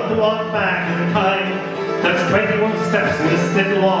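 Live Irish folk music: a strummed acoustic guitar and a cittern play an instrumental passage between verses, and the singer's voice comes back in at the very end.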